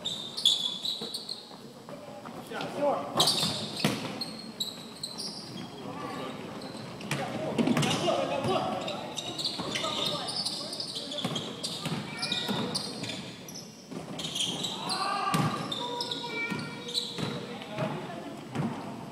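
Basketball game on a hardwood court: the ball bouncing, sneakers squeaking on the floor, and players' indistinct calls and shouts.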